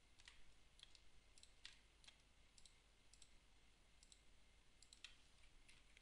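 Faint computer mouse clicks, a dozen or so scattered irregularly over near-silent room hiss.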